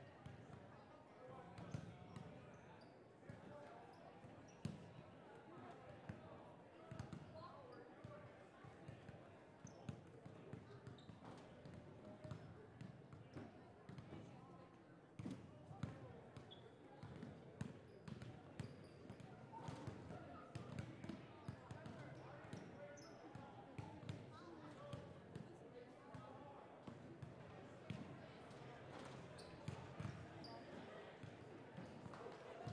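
Several basketballs bouncing on a hardwood gym floor during warm-ups, an irregular run of thumps, over the low chatter of people talking in the gym.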